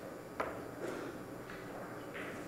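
A faint, sharp click of a cue tip striking the cue ball about half a second in, with a softer ball contact shortly after, over the low hush of a quiet tournament hall.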